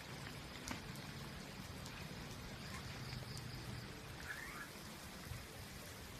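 Rain falling, a faint steady hiss with scattered single drops ticking.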